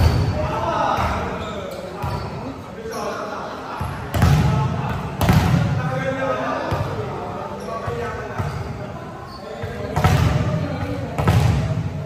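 A volleyball being struck and hitting the hardwood gym floor: several sharp, echoing smacks spread through the rally, with players' voices calling between them in a large reverberant hall.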